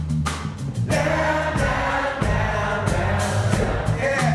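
Live blues-rock band playing electric guitars, bass guitar and drums, with regular drum hits. From about a second in, the band settles into a dense held passage.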